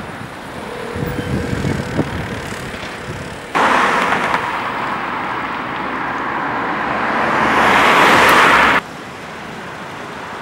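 Outdoor street noise, then road traffic: a car on the road drawing nearer and growing louder, starting suddenly a few seconds in and cut off abruptly near the end.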